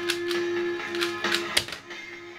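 Plastic 3x3 Rubik's cube being turned one-handed, a quick run of sharp clicks, over guitar background music. About one and a half seconds in, the cube is set down on the laptop as the solve ends, and after that mostly the music remains.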